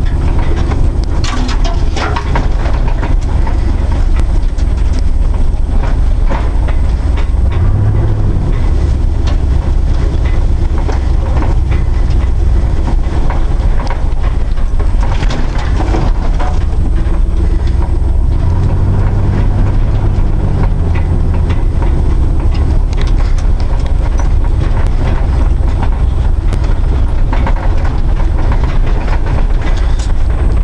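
GMC truck driving slowly over a bumpy dirt trail, heard from inside the cab: steady engine and drivetrain noise with frequent knocks and rattles. The engine note swells about eight seconds in and again around twenty seconds in.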